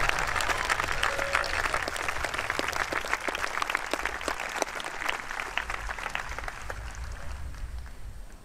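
Audience applauding, many hands clapping, the clapping slowly dying away toward the end.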